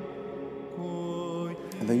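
Byzantine chant as background music: a voice holding long, steady notes, moving to a new note just under a second in.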